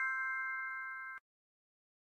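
Fading ring of a bell-like chime sound effect: a few steady tones dying away, then cut off abruptly just over a second in, followed by silence.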